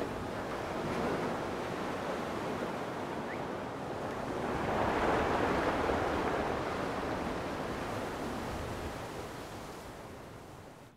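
Ocean surf breaking and washing over shoreline rocks, a steady rushing that swells to its loudest about halfway through and fades toward the end.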